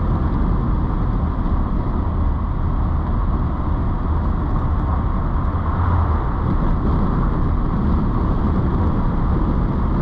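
In-cabin sound of a 1988 Mercedes-Benz 560SL under way: its V8 running steadily under tyre and road noise, a continuous low rumble with no sudden events.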